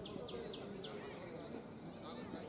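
An animal chirping: a quick run of about five short falling chirps in the first second, over faint outdoor background noise.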